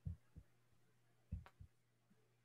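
Near silence: a faint steady low hum with four soft, short low thumps, the strongest about a second and a half in with a brief click.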